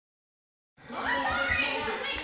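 Several young girls' voices chattering and calling out over each other, starting just under a second in after silence.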